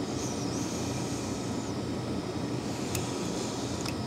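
Steady low background hum with a single faint click about three seconds in.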